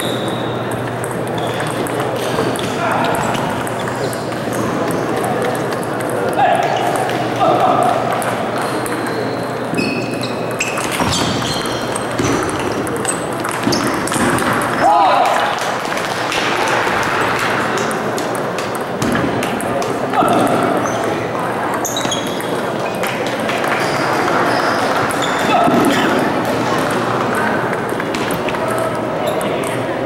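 Table tennis ball clicking off bats and the table in short runs of rallies, with voices chattering in the hall throughout.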